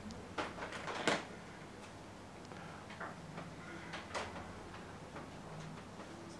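A few sharp clicks and knocks, most of them in the first second and then sparser and fainter, over a low steady hum in a quiet room.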